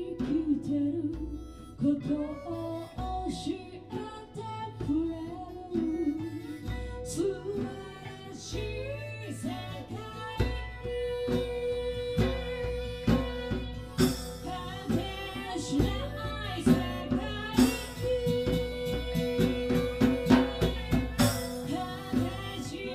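Live acoustic band playing: a woman sings over strummed acoustic guitars and an electric guitar, with percussion keeping a steady beat. About halfway through she holds long sustained notes.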